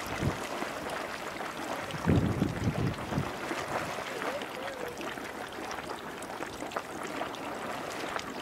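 Marmot Cave Geyser erupting in a small, low-energy eruption, its pool water churning and splashing up in sprays without pause. A louder burst comes about two seconds in.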